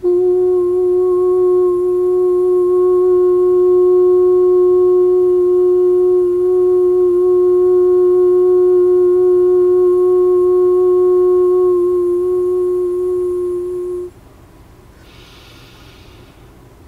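A woman's voice holds one long, steady hummed note for about fourteen seconds as meditative toning. It cuts off abruptly, and she draws a breath.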